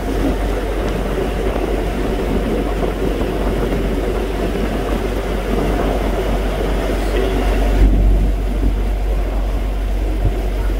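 A small boat's motor running steadily while under way, with a steady rush of water and wind noise. A brief low bump comes about eight seconds in.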